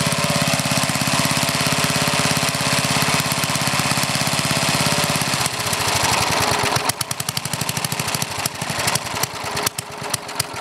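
Old Briggs & Stratton engine with a one-piece Flo-Jet carburetor running evenly, then about five seconds in the idle turns rough and choppy, the firing uneven and stumbling. The idle fuel-air mixture is set too lean.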